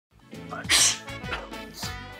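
A man sneezing once, a short loud burst a little under a second in, over background music.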